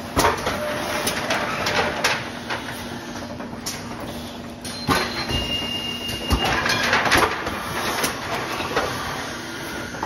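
A thermoforming production line running: machinery hum with irregular mechanical clatter and knocks, and plastic parts rattling on the conveyor. A brief high tone sounds a little after halfway.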